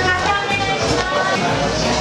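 Background music with a steady low bass under a melody.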